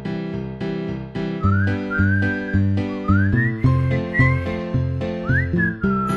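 Upbeat background music: a whistled melody over a bouncy plucked accompaniment. The plucked notes repeat about two to three times a second, and the whistled tune comes in about a second and a half in.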